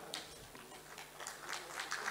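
Faint, scattered hand claps from an audience starting about a second in and gathering toward applause.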